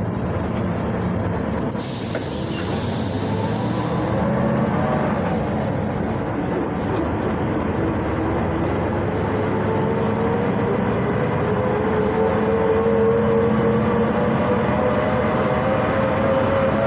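PAZ-32054 bus's ZMZ-5234 V8 engine and drivetrain running, heard from inside the passenger cabin. About two seconds in there is a hiss of compressed air lasting about two seconds, then a whine that rises slowly in pitch as the bus gathers speed.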